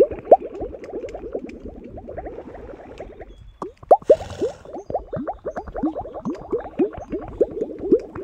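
A dense chorus of many animals giving short calls that drop in pitch, several a second and overlapping, with a brief lull a little before the middle.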